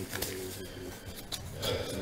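Faint handling sounds from a gloved hand moving a shrink-wrapped cardboard box of trading cards: light rubbing with a few small clicks.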